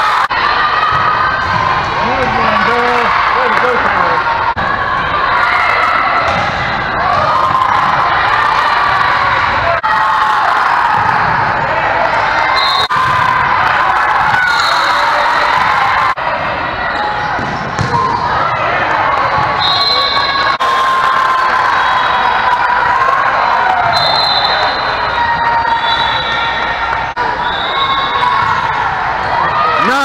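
Indoor volleyball hall din in a large multi-court gym: many players' voices calling and shouting over one another, with scattered sharp slaps of volleyballs being hit and bouncing.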